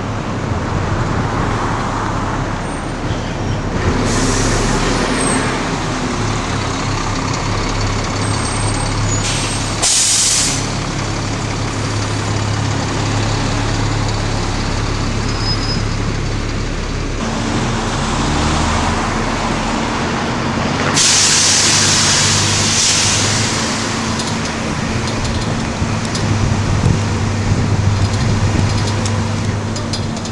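Bus engine running with a steady low hum, with short bursts of air-brake hiss about four seconds in, around ten seconds, and again just after twenty seconds.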